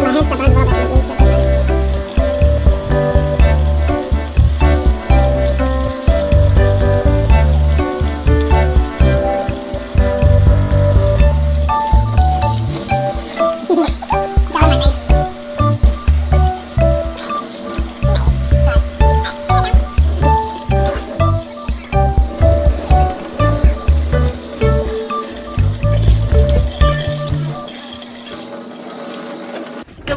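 Background music with a heavy, repeating bass beat, fading down shortly before the end.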